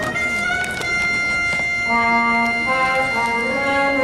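Brass-led orchestral theatre music: a high note held from the start, then a moving melody joins about halfway through.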